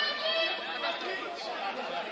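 Indistinct men's voices at a distance, several people talking and calling out.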